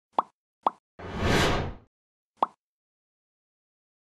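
Logo-animation sound effects: two short pops in quick succession, a whoosh lasting just under a second, then a third pop.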